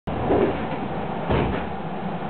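Two dull knocks about a second apart over the steady hum of a 221 series electric train standing at a platform.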